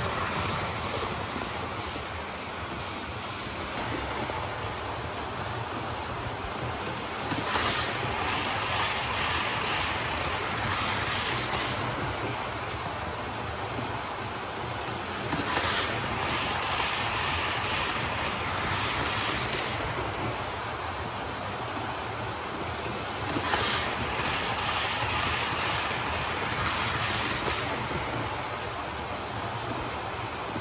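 00 gauge model Class 73 locomotive and a rake of eight model coaches running round a layout: a steady running whirr with clusters of rapid clicks from the wheels over the track, louder each time the train passes, about every eight seconds.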